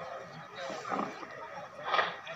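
Several people's voices talking and calling out, with a loud shout just before the end.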